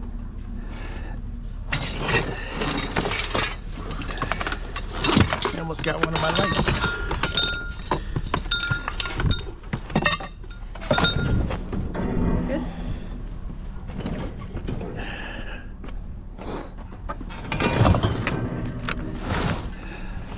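Loose scrap metal clanking and rattling as pieces are shifted around on a loaded trailer, some pieces ringing briefly after they are struck.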